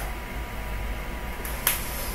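A red pen writing briefly on paper, then a single sharp click about one and a half seconds in, over a steady low hum.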